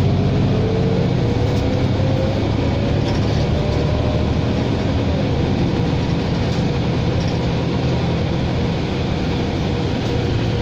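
Cabin sound of a New Flyer Xcelsior XD60 diesel articulated bus under way: a steady low engine and drivetrain drone, with a whine that rises in pitch over the first few seconds, then falls back and levels off.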